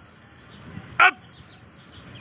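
A man shouts the pull-up cadence command "Up" once, about a second in. It is short and falls sharply in pitch.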